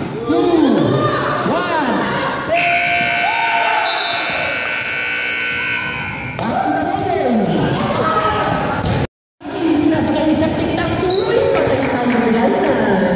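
Gym scoreboard buzzer sounding steadily for about three and a half seconds, signalling the end of the third period. Around it, sneakers squeak on the hardwood court and a basketball bounces. The sound cuts out for a moment about nine seconds in.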